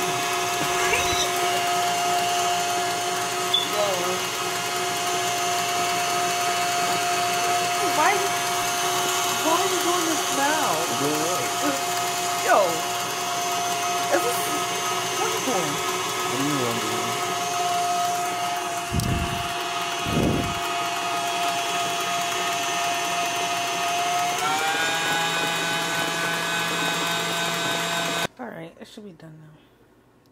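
KitchenAid Artisan stand mixer running with its wire whisk in brownie batter, a steady motor hum that rises in pitch near the end as the speed is turned up, then cuts off. Two dull bumps come about two-thirds of the way through.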